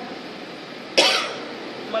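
A single short cough about a second in, between pauses in speech.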